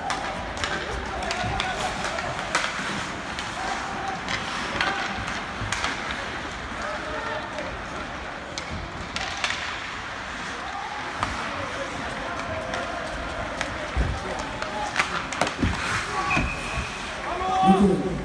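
Ice hockey play heard from the stands: skates scraping and sticks and puck clacking on the ice and boards, many short knocks scattered throughout, with players and spectators calling out.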